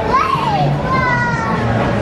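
Young children's voices: a high, bending call early on, then a drawn-out, gently falling squeal about a second in.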